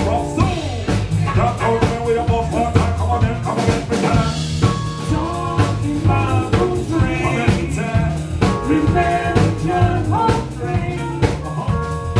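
Live jazz–hip-hop band playing: a drum kit keeps a steady beat under bass and a lead melody line.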